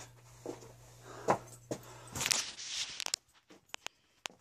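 Handling knocks and rustles as an old thick steel fender is set onto a mini bike's spoked wheel, with one sharp knock a little over a second in, another about two seconds in, and lighter clicks after.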